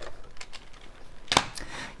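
Small plastic clicks and knocks from handling the accessory compartment and box at the front of a sewing machine, with one sharp click a little over a second in.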